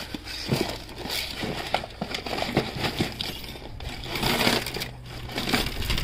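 A bag of costume jewelry (bead and pearl necklaces, metal bangles) being tipped out of a paper gift bag: a busy run of small clicks, jingles and rattles as the pieces tumble onto a ribbed metal floor, with rustling of the paper bag.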